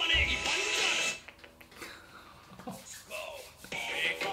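Hindi rap vocals over a hip-hop beat. After about a second the track drops out to a quiet break lasting roughly two and a half seconds, then the rap comes back in just before the end.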